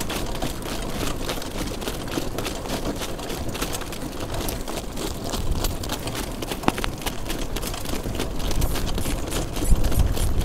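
A harness horse's hoofbeats and the rumble of the sulky rolling over the track, mixed with wind rushing over the driver's microphone; the low rumble grows near the end.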